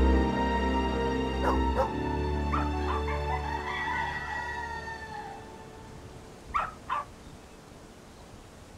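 Soundtrack music with long held low notes fades out over about five seconds. A dog barks twice in quick succession near the end.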